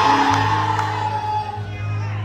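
Live church music: a steady low bass note under sustained held chord notes, with faint singing voices; one higher held note fades out a little past halfway.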